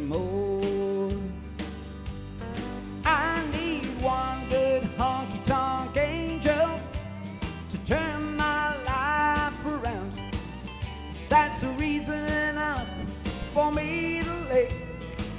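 Instrumental break in a country-rock song: a full band with bass and drums, and a lead electric guitar playing notes that bend up in pitch.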